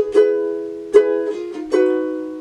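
Ukulele with a capo at the first fret, strummed through the G minor, E flat, B flat, F chorus progression. About four strums, two quick ones at the start, each chord left to ring and fade, with a change of chord near the end.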